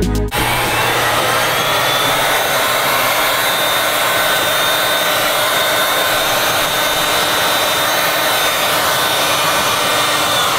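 Heat gun blowing steadily, an even rushing of air with a faint high motor whine, starting just after the music cuts out.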